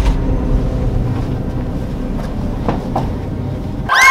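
A deep, steady rumble with a few faint clicks about two to three seconds in.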